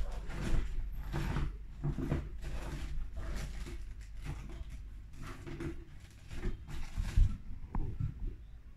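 Irregular rustling and handling noises from someone rummaging for a jig head, with a sharp knock about seven seconds in.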